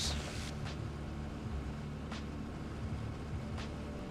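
Piper J-3 Cub's engine and propeller running steadily as the plane takes off again, with wind noise through the open door.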